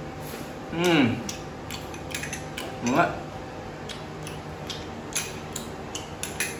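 Metal spoon clicking and scraping against a small ceramic bowl during eating, a scatter of light clinks. Two short hummed vocal sounds, one falling in pitch about a second in and one rising near the three-second mark.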